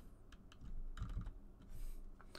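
Computer keyboard typing: a handful of keystrokes at an uneven pace as a short word is typed in.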